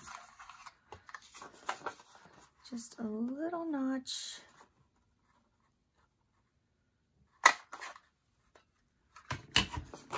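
Paper rustling and small clicks as sheet-music paper and a plastic paper punch are handled on a cutting mat, with a short hummed "mm" about three seconds in. A single sharp click about two-thirds of the way through is the loudest sound, followed by more paper rustling near the end.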